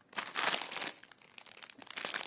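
Clear plastic bag of chocolates crinkling as it is handled: a burst of rustling in the first second, then scattered lighter crackles.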